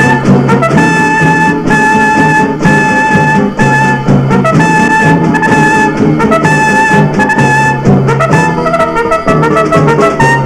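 Brass-led orchestral film score: a high note held in short repeated phrases over a pulsing low line, breaking into a busier run of notes near the end.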